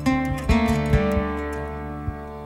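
Acoustic guitar played in a song's instrumental intro. A chord sounds near the start and two more come about half a second and one second in, each ringing out and slowly fading.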